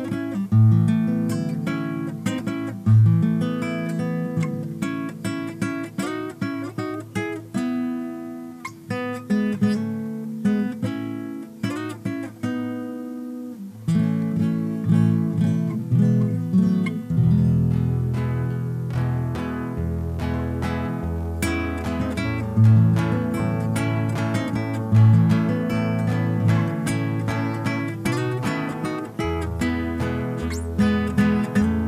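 Two nylon-string criolla guitars playing an instrumental passage: picked melody notes over chords. The sound grows fuller, with more bass, from about 14 seconds in.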